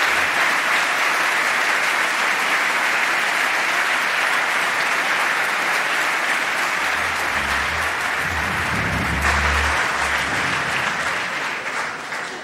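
Sustained applause from an audience, many people clapping at once, steady and then thinning out near the end.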